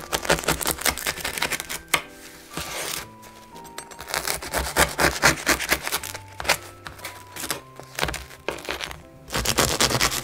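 A serrated bread knife sawing through the crisp crust of an oven-baked ciabatta on a wooden cutting board, a fast crackling rasp of strokes. It comes in three spells, with light background music between them.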